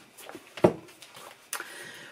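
Sheets of paper rustling as they are handled, with one short sharp sound about two-thirds of a second in.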